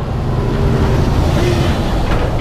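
Articulated lorry passing close by: a low engine note under a rush of tyres and air that builds to a peak about a second in, with wind buffeting the microphone.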